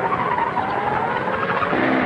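A car speeding with its tyres squealing as it takes a corner: a wavering high squeal over steady engine and road noise.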